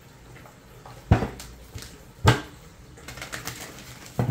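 Two sharp knocks a little over a second apart, then the quick patter of a tarot deck being shuffled by hand.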